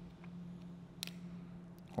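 Small metal parts clicking as a copper washer is worked off an auto air valve's centre post: one sharp click about a second in and a couple of faint ticks, over a low steady hum.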